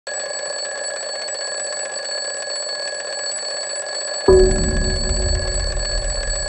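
Mechanical twin-bell alarm clock ringing continuously. About four seconds in, a deep low sound joins it and the level rises.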